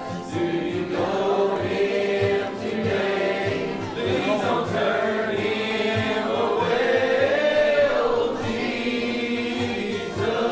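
A church congregation singing a gospel hymn together, led by voices and guitar, with a steady strummed beat underneath.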